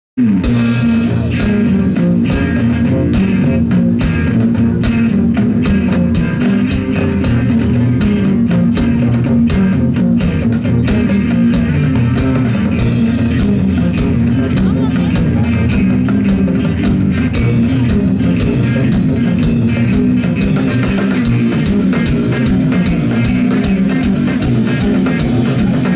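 A live band playing loud, driving rock-style music through a festival stage PA: drum kit with steady beats under electric guitar and a heavy low end.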